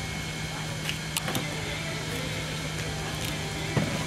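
Steady outdoor background noise with a constant low hum, broken by a few sharp clicks about a second in and again near the end.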